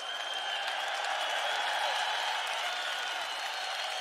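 Large theatre audience applauding steadily after a stage introduction, with a faint high held tone above it.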